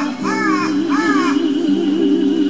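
A crow caws twice in the first second and a half, over keyboard accompaniment with a held note wavering in vibrato.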